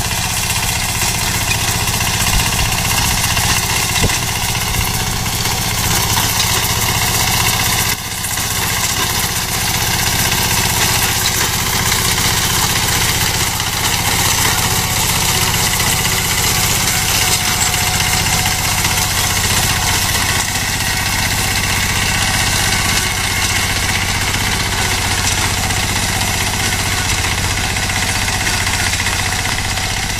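Small engine of a ride-on wheat reaper running steadily as the machine cuts through standing wheat, with a brief dip about eight seconds in.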